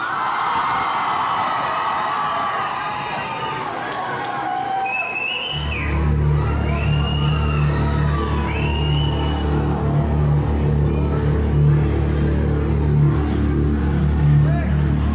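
A concert crowd cheering and whooping in a large hall; about five and a half seconds in, a loud, steady, low music drone starts, a band's intro, and runs on under the cheers.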